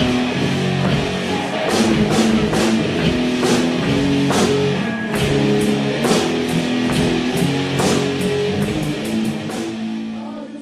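Heavy, slow stoner-rock music: sustained distorted electric guitar chords over a drum kit with repeated cymbal crashes, starting to fade near the end.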